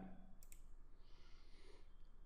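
Near silence, broken by one faint click about half a second in, a computer mouse button being clicked.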